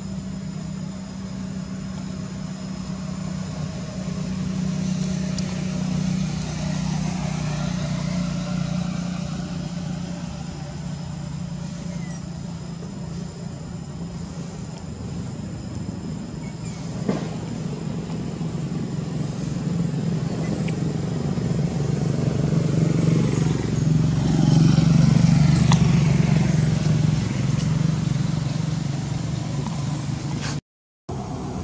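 Steady hum of motor vehicle engines nearby, swelling twice as vehicles come and go and loudest about three-quarters of the way through. A single sharp click comes a little past halfway.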